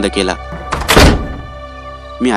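A door shutting: one heavy thud about a second in, with a short echoing tail, over soft background music.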